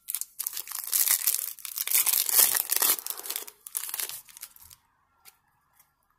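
Foil wrapper of a Panini Prizm football card pack being torn open and crinkled: a crackly rustling that starts just after the beginning, is loudest in the middle and stops a little before the end.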